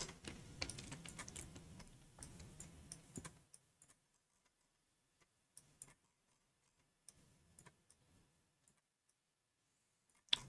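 Faint clicking of a computer keyboard and mouse, quick and irregular for about the first three seconds, then near silence with a few isolated clicks.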